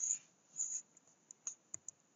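A few faint, sharp clicks in the second half, over low room noise.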